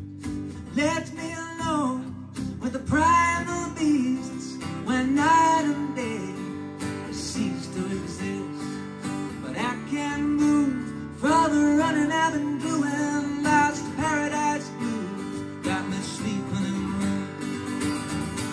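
Acoustic guitar strummed steadily, with a man singing over it in several phrases.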